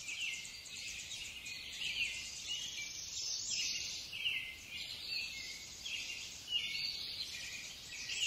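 Birdsong over a steady insect trill: short falling chirps repeat about once or twice a second above a fast, high buzzing.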